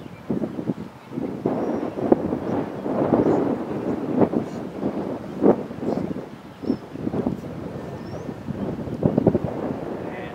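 Wind buffeting the microphone in uneven gusts, with a low rumble and several sharp thumps.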